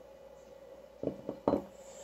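Two short knocks of a glass beer bottle set down on a table, about a second in and again half a second later.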